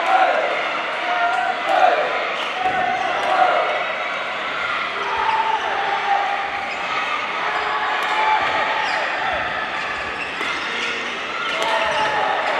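Echoing sound of a badminton match in a big gym: voices and shouts from players and teams, with sharp racket hits on the shuttlecock and thuds of shoes on the wooden court floor.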